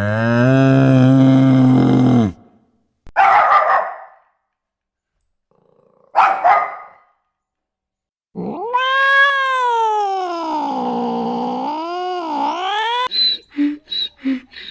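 A Hereford bull mooing in one long call that rises in pitch and then holds, ending about two seconds in. Two short animal calls follow. Then a small dog gives a long, wavering, howl-like call of about five seconds.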